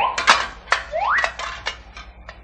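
Cartoon sound effect of a knight's metal armour clanking in a string of short clinks as he climbs onto his horse, with two rising whistle-like glides, one at the start and one about a second in.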